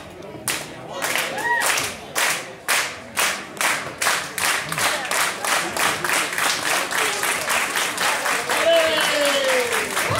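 Audience clapping in unison, a steady rhythm of about two to three claps a second that quickens as it goes on, with a voice calling out near the end.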